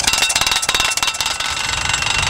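Rhino pneumatic post driver hammering a galvanized steel fence post into the ground: rapid, evenly spaced blows, many a second, with a steady high ring over them.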